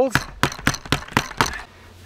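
Rapid knocks on a plastic five-gallon pail, about four a second, as it is banged to loosen packed soil inside; the knocking stops about a second and a half in.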